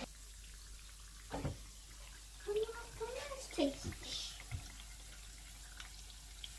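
Dough buns frying in a pan of hot oil, sizzling steadily, with a few faint clicks.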